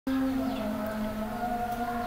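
A steady, held tone made of a few pitches, drifting slightly lower.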